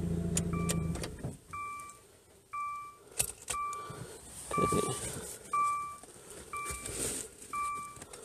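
A car's warning chime dinging about once a second after a low hum from the car cuts off about a second in, as the car is switched off. Keys jangle and click among the dings.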